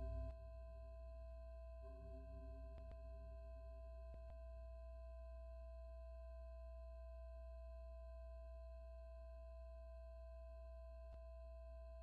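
Faint steady electronic tone held on at the end of the track, with a low hum beneath, after the rest of the music drops away just after the start; a few faint clicks are heard over it.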